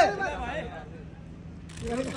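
Men's voices calling out in Hindi, dying away after about half a second to a low steady rumble of background noise, with voices starting up again near the end.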